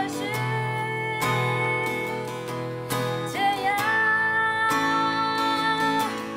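A woman singing, accompanying herself by strumming an acoustic guitar, with two long held notes and chords strummed about once a second.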